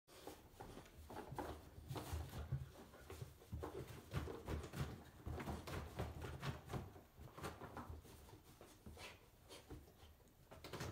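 Yellow Labrador puppy digging in a toy box: irregular scratching, rustling and knocking of toys and the box as it paws through them.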